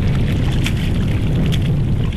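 Wind buffeting the microphone as a steady low rumble over a cockle harvester working in the mud, with a couple of short scrapes from the rake.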